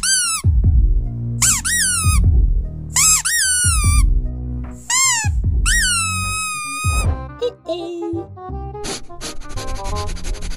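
Squeaky dog toy squeaking about seven times, short high squeaks that rise and fall in pitch, some in quick pairs, over music with a steady beat. The squeaks stop about seven seconds in, and quicker, smaller chirps and clicks follow.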